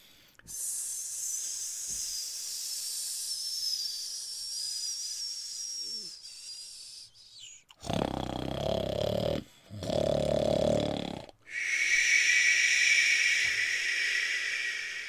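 A man's forceful breath sounds: a long, high hissing exhale, then two loud breaths about a second and a half each, then a long shushing exhale.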